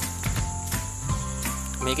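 Steady high-pitched chirring of crickets, over background music with sustained low notes that shift about a second in.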